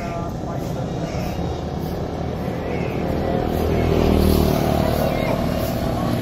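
Road traffic: a motor vehicle engine running close by, over a steady low rumble, growing louder about four seconds in and then easing off as it passes.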